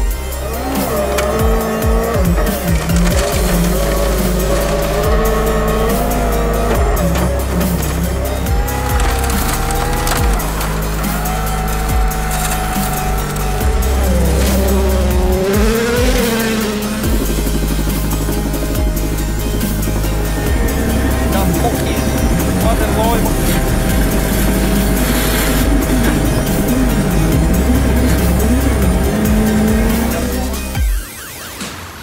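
Ford Fiesta World Rally Car engines revving hard on gravel, the pitch rising and dropping again and again through gear changes, with a backing music beat. A shouted exclamation comes about three-quarters of the way through.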